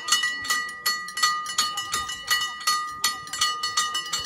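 A hand bell rung over and over, about three strikes a second, its metal ringing on between strokes.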